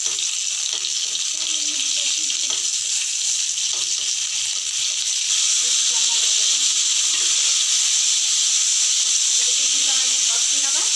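Chopped tomatoes and spices frying in hot oil in a kadai: a steady sizzle that grows louder a little after five seconds in, as the tomatoes go into the pan.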